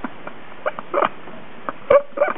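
Short, squeaky bursts of stifled laughter: a few breathy giggles spaced through the two seconds, the last and loudest near the end.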